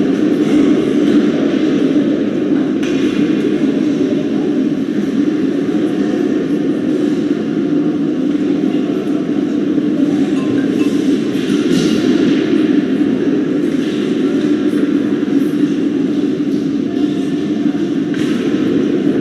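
Steady, loud droning hall noise of an indoor ice rink, with a faint hiss above it and no distinct events.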